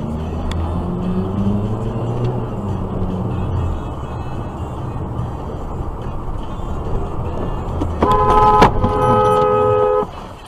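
Car engine and road noise heard from inside the cabin while driving. About eight seconds in, a car horn sounds: a short blast, a brief break, then a longer held blast.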